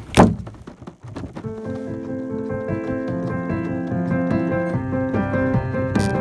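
A loud thump and a few knocks as the recording phone is handled, then piano-keyboard notes start about a second and a half in and carry on as held chords and a melody.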